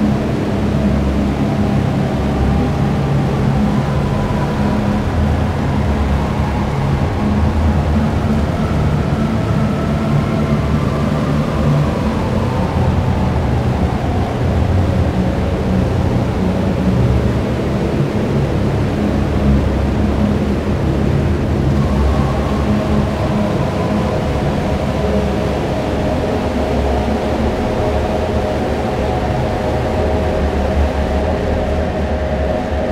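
Psychedelic dark ambient synth drone: a dense, steady low hum with slowly drifting, shimmering tones above it.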